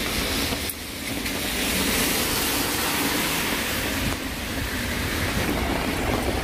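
Steady hiss of traffic on a rain-wet road, a little louder in the middle.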